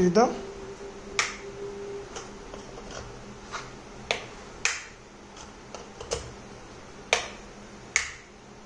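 A run of sharp clicks at irregular intervals, about ten in all.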